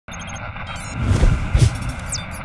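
Electronic logo sting: a quick run of short high beeps over a hissing whoosh, then two deep booms about one and one and a half seconds in.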